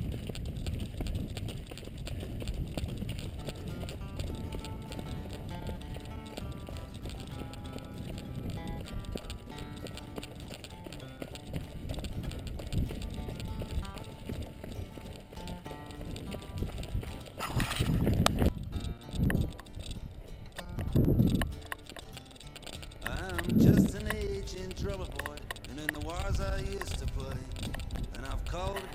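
Running footsteps on a dirt track, with a steady low rumble. In the second half, several loud low gusts of wind buffet the body-worn camera's microphone.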